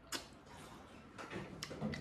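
Soft mouth sounds of a person eating a bite of braised carp cooked with its scales on: a sharp click just after the start, then a few fainter clicks and smacks of chewing.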